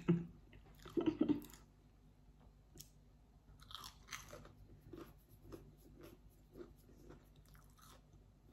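A person biting into and chewing a crisp-coated mozzarella cheese stick, with a crunch at about four seconds and then soft chewing about twice a second.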